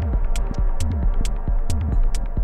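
Electronic music played live on a modular synthesizer: a pulsing bass at about two beats a second with short falling blips, crisp hi-hat-like ticks between the beats, and a held chord of steady tones over the top.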